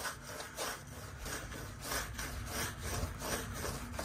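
Paintbrush scrubbing paint onto a rough concrete step: rhythmic back-and-forth bristle strokes, about three a second.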